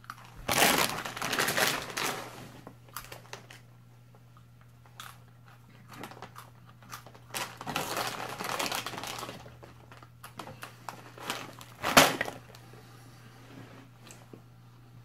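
A crinkly plastic snack bag rustling as a hand digs into it, in two longer spells, with scattered crunching and one sharp, loud snap about twelve seconds in as a piece is bitten.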